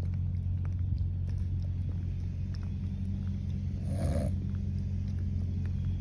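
Idling car engine, a steady low hum, with a brief soft noise about four seconds in.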